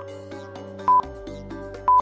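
Countdown timer sound effect: a short, sharp electronic beep once a second, two beeps here, over a looping background music bed.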